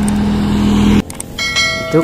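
A steady low hum with a rushing noise cuts off suddenly about halfway through. After a click, a bright ringing bell chime follows: the notification-bell sound effect of a subscribe-button animation.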